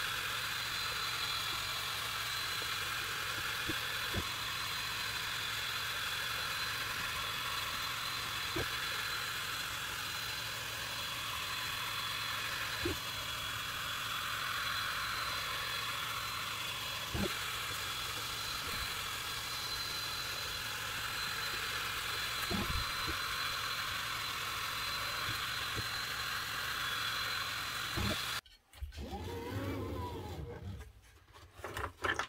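Creality Falcon2 22W diode laser engraver cutting 6 mm plywood: a steady whirring hiss with a high, even whine and a few faint ticks. It cuts off suddenly near the end.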